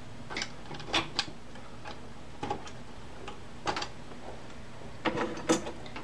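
Light, scattered clicks and taps, about seven over the few seconds, as RAM memory sticks are handled and set down one by one on a wooden tabletop, over a low steady hum.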